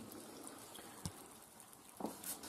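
Faint steady hiss of stewing food in a pot, with one small click about a second in.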